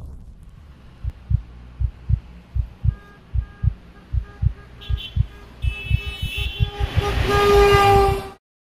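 Logo intro sound effect: low heartbeat-like thumps that speed up, joined about three seconds in by a stuttering pitched tone, with a rising hiss swelling near the end and cutting off abruptly.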